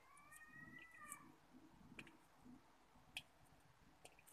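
Near silence. About a second's faint, high, drawn-out call rises and falls slightly near the start, and a few faint clicks follow.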